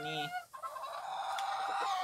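Chickens calling: one harsh, drawn-out hen call starts about half a second in and lasts about a second and a half.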